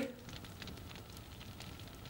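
Faint crackling of an open fire in a fireplace.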